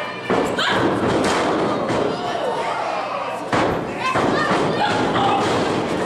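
Heavy thuds on a wrestling ring's mat, one about a third of a second in and a louder one about three and a half seconds in, amid shouts from spectators and wrestlers.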